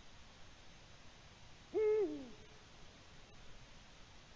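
Eurasian eagle-owl giving a single low hoot about two seconds in, held level and then dropping in pitch at the end.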